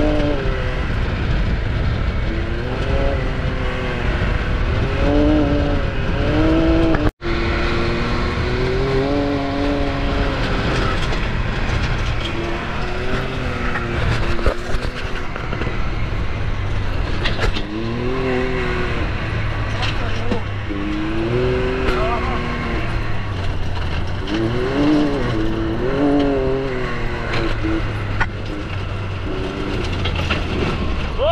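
Can-Am Maverick X3 side-by-side's turbocharged three-cylinder engine revving up and down again and again as the throttle is worked on a dirt trail, over a steady rumble of tyres and wind. The sound cuts out for a moment about seven seconds in.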